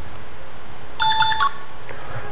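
Mobile phone sounding a short burst of electronic tones, several stepped notes lasting about half a second, about a second in, as an incoming call is being taken. A small click follows just before the end.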